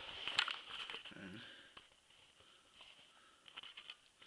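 Quiet handling sounds from fishing lures being untangled by hand: scattered small clicks and light rustling, with a sharper click about half a second in and a cluster of clicks near the end.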